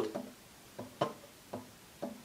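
Nylon-string classical guitar bass strings plucked with the palm mute too far forward, so each note is choked into a short, dull percussive knock with no audible pitch, like pure percussion. Three strokes, the last two about half a second apart.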